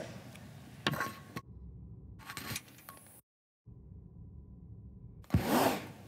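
Quiet room tone from the chamber microphones with a sharp click about a second in. A brief dropout to dead silence comes a little past the middle, and a short noisy burst comes near the end.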